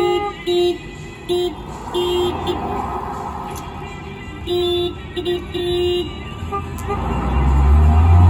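A car horn sounding a series of short toots in two bursts, then a car engine's low rumble swelling near the end. It comes from a film soundtrack played over outdoor loudspeakers.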